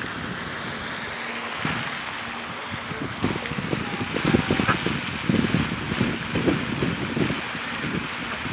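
Wind blowing across a phone microphone outdoors: a steady rush at first, then rough, irregular buffeting from about three seconds in.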